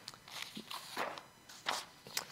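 Papers being handled at a lectern: four or five short, soft rustles and scuffs as pages are shifted and turned.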